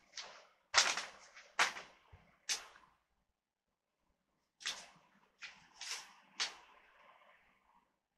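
Paper and packaging being handled: a series of short, sharp rustles and swishes, four in the first three seconds, a pause of about a second and a half, then four more trailing off into a faint rustle.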